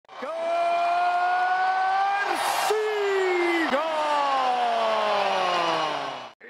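A ring announcer's voice calling out a fighter's name before a boxing bout, each syllable stretched into a long held note with a short hiss between. The last drawn-out syllable slides slowly down in pitch.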